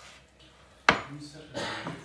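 A kitchen knife slicing through raw venison, striking the wooden chopping board once with a sharp knock about a second in.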